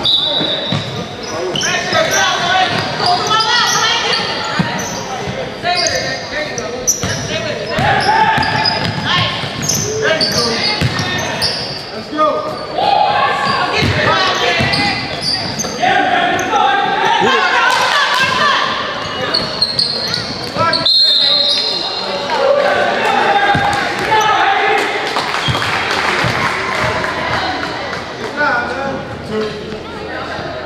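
A youth girls' basketball game in a large, echoing gym: a ball bouncing on the court amid unintelligible calling and shouting from players and spectators, with a brief high-pitched tone about two-thirds of the way through.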